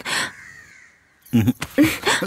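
A bird gives one short, harsh call right at the start, trailing off into a faint thin note within about a second.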